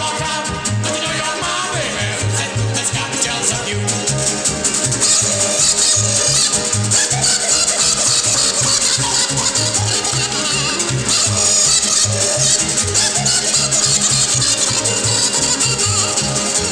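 A live band playing an instrumental passage: a bouncing bass line of short, even notes under dense, rattling high percussion.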